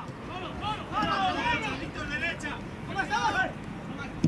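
Several raised voices calling out in short bursts, quieter and higher-pitched than the commentary, over steady outdoor background noise.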